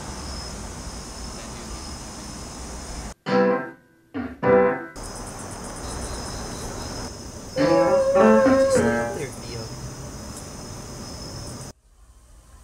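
Edited intro sound: steady background hiss with short snatches of a voice that cut in and out abruptly, including a longer voice phrase with a held pitch about halfway through. The sound drops out suddenly just after three seconds in and again just before the end.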